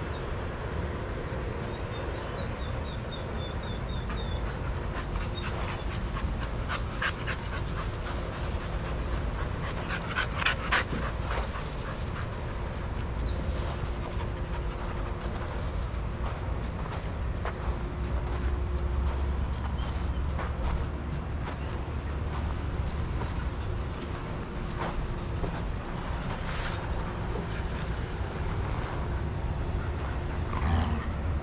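Dogs panting and moving about, with a few short knocks or scuffs, over a steady low background rumble.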